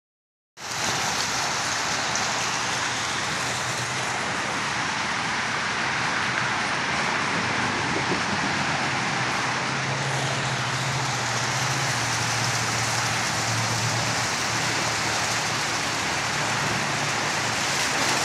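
Small garden-pond waterfall splashing steadily into the pond, an even rushing of water.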